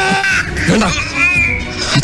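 Film soundtrack: dramatic background music with a voice over it, in short bursts about half a second in and again past the middle.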